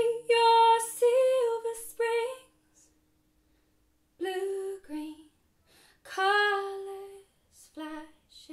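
A woman singing slow, drawn-out phrases, first over a held acoustic guitar chord ringing out, then unaccompanied. After a pause about halfway through, she sings three short phrases with gaps between them.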